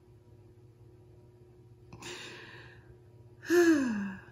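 A woman's breath about two seconds in, then a loud voiced sigh that falls in pitch near the end: a theatrical sigh of sadness.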